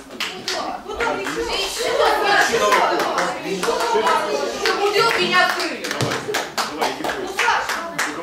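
Audience clapping after a song, with voices talking over the applause.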